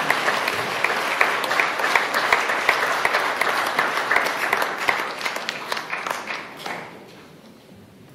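Audience applauding, a dense clatter of many hands that dies away about seven seconds in.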